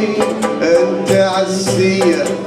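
A man singing with oud and plucked-string ensemble accompaniment, the voice line bending through melismatic turns over regular plucked attacks.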